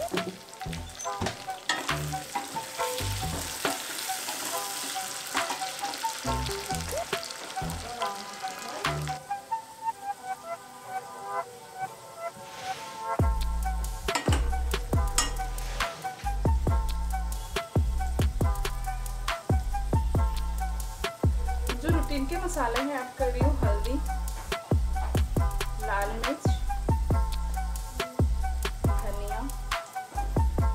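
Diced potatoes sizzling as they fry in oil in a stainless steel kadai, stirred with a spatula. The sizzle is strongest in the first third. Background music plays throughout, and a heavy bass beat comes in about halfway.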